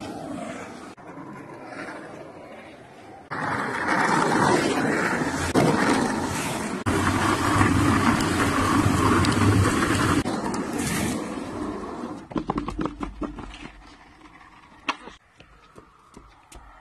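Skateboard wheels rolling fast on concrete: a loud, steady rolling rumble that jumps abruptly in level several times. In the last few seconds it gives way to a quieter run of short clicks and knocks.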